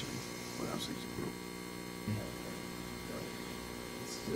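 Steady electrical mains hum through the microphone and recording system, over low room tone.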